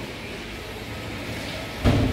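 Steady hiss of water running from taps into a tiled ablution trough, with one sudden loud thump near the end.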